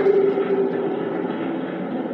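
Spirit box sweeping through radio frequencies, giving a steady hiss of static with faint broken fragments of sound.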